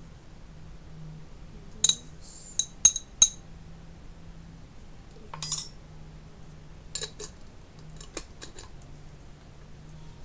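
A spoon clinking against a glass jar as spoonfuls of dried herbs are measured into it. There are four sharp, ringing clinks about two to three seconds in, a short rustling scrape around the middle, then a run of lighter clicks and taps.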